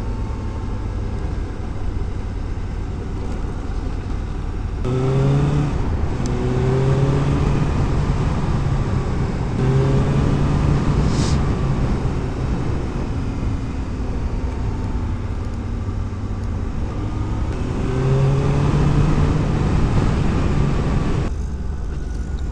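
2015 Suzuki GSX-S750's inline-four engine, intake silencer removed, under way on the road: the engine note climbs in several rising pulls as it accelerates and holds steady between them, over a constant rumble of wind and road noise.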